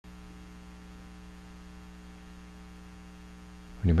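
Steady electrical mains hum, a low unchanging drone, until a man starts speaking near the end.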